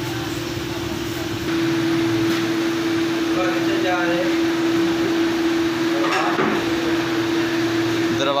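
Steady electric hum of a pedestal fan's motor, a single held tone over a hiss of moving air, which grows louder about a second and a half in.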